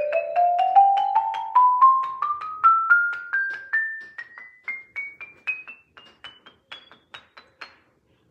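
Xylophone played with mallets in a quick run of single struck notes climbing steadily up the scale, about four notes a second. The notes are loudest at first and grow fainter as they get higher. It is a rising suspense cue for a tense moment or something crazy about to happen.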